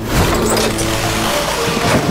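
A sudden loud rushing whoosh of fast flight, with a deep rumble beneath it, over background music with held notes.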